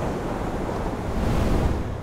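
A motorcycle going past at speed, heard mostly as a rushing of wind and road noise over a low rumble. It swells about a second and a half in, then cuts off.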